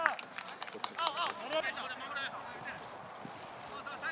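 Short shouted calls from voices on a football pitch, with a few sharp knocks of footballs being struck during the first second.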